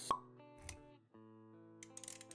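Sound effects and music of an animated intro: a short sharp pop just after the start, a soft low thud a little later, then quiet held notes of background music.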